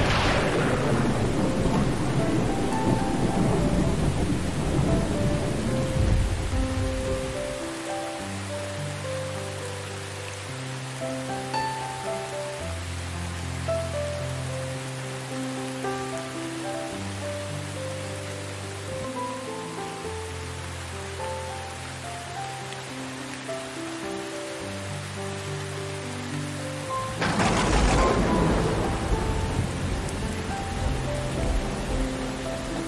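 Steady rain with slow, soft piano music over it. A thunderclap right at the start rumbles away over the first several seconds, and another loud thunderclap breaks in near the end.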